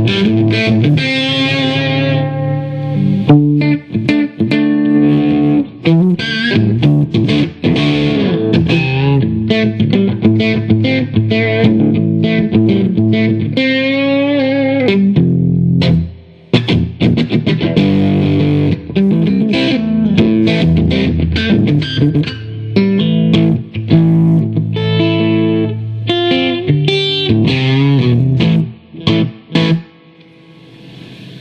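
1968 Fender pink paisley Telecaster played loud through an amplifier: a continuous stretch of single notes and chords with string bends. The sound drops out briefly about halfway through.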